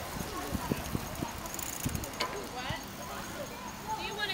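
Indistinct chatter from a group of passing cyclists, mixed with scattered light knocks and clicks and a sharper click about two seconds in.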